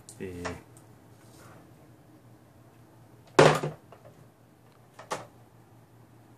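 Knocks from the phone camera being handled: one loud thump about three and a half seconds in and two lighter clicks near the end, over a faint steady low hum.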